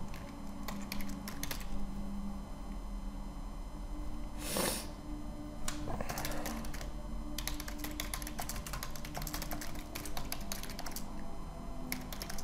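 Typing on a computer keyboard in three bursts of quick keystrokes, with a short rush of noise about halfway through and a faint steady low hum underneath.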